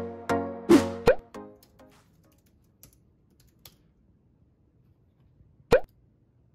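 Bright intro jingle of plucked notes with quick upward pitch slides, ending about two seconds in. After a quiet stretch with two faint clicks, one short rising cartoon "pop" sound effect near the end, as loud as the music's peaks.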